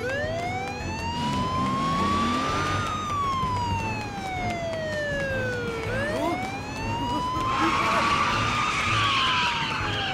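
Police car siren wailing, its pitch sliding slowly up and down in two long cycles of about six seconds each. A rushing noise joins in over the last few seconds.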